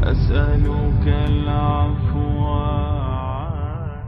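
Outro music of long, held, chant-like notes over a low rumbling bed. The notes change a few times, one wavers about three and a half seconds in, and the music starts to fade near the end.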